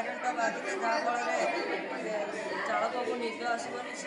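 Overlapping voices chattering in a large, echoing room.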